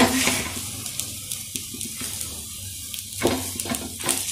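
Gram flour (besan) batter sizzling on a hot tawa while a wooden spatula scrapes and presses it against the pan. There is a louder scrape a little after three seconds.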